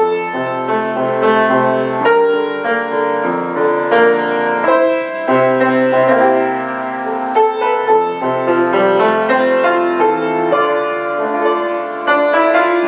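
A Rösler six-foot German grand piano being played: a flowing piece in sustained chords, with long-held bass notes under a moving melody.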